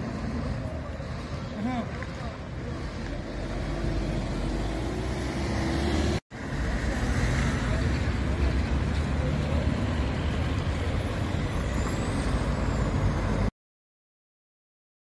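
Road traffic noise: a steady low rumble of vehicles on the street, with faint voices. It drops out briefly about six seconds in and cuts off abruptly near the end.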